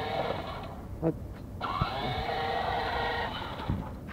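Small electric motor of a child's battery-powered ride-on toy motorbike, whining steadily as it drives. It cuts out under a second in, runs again for under two seconds from about a second and a half in, and stops near the end, as the foot pedal is let up and pressed again.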